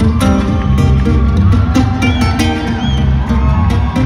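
Solo acoustic guitar played live through an arena PA, fingerpicked notes over a driving rhythm of percussive string slaps. Scattered whoops and cheers come from the crowd.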